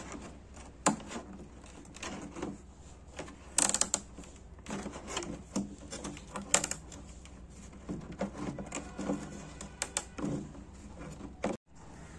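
Scissors cutting through the stiff plastic of a 20-litre water bottle: irregular crackles and sharp snaps of the plastic, a few louder ones scattered through.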